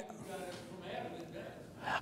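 A faint pause in a man's talk, picked up on a lapel microphone: a breath and low, indistinct room murmur.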